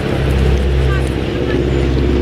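Steady, loud low hum of an idling engine, holding several pitches with no change, with a few faint high chirps around the middle.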